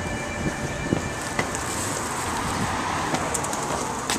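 Steady outdoor street noise: a general hum of traffic with low rumble on the microphone. A faint high steady tone sounds for about the first second and a half.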